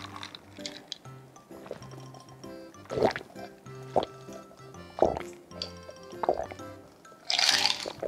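Background music with held notes, over gulps of a drink swallowed roughly once a second. Near the end comes a loud breathy exhale.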